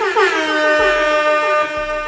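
A loud, horn-like pitched tone that glides down over its first half second, then holds steady until near the end, with a faster wavering tone beneath it.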